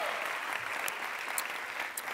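Studio audience applauding, a steady spread of clapping.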